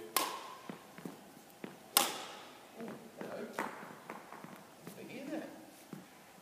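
Badminton racket striking a shuttlecock: two sharp cracks about two seconds apart, each ringing on in the echo of a sports hall, with a few quieter taps between.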